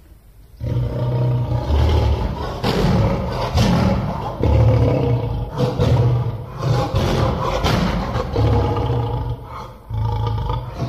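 A loud, low, rough animal-like sound in a run of bursts about a second long, beginning about half a second in; a sound effect laid over the picture, since a hamster does not make such a sound.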